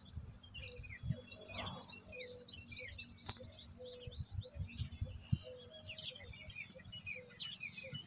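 Faint chirping of small birds, many short calls overlapping throughout, with a lower short note repeating among them.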